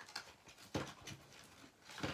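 Faint clicks and rustling of spools of thread and twine being handled in a box, with one sharper knock about three quarters of a second in.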